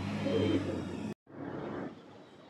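Heavy trucks' engines running as they pass on the road, a steady low drone with road noise that cuts off abruptly just over a second in, followed by a short rush of noise.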